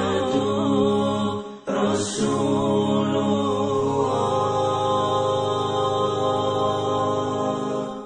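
Chanted vocal music over sustained, drone-like tones. It breaks off briefly about one and a half seconds in, comes back with a bright swell, and fades out at the end.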